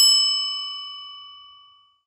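A single bell-like ding sound effect, struck at the very start, ringing out and fading away over about two seconds.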